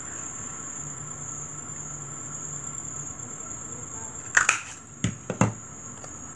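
Handheld craft paper punch snapping shut as it cuts the end of a paper strip: a sharp click a little past four seconds in, then two more about a second later.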